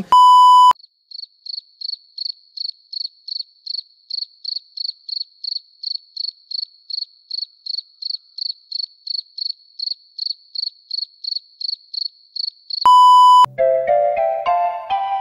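A loud, steady electronic beep like a censor bleep, then a cricket-chirping sound effect with short high chirps about three a second, the stock 'crickets' gag for an awkward silence. A second identical beep comes near the end.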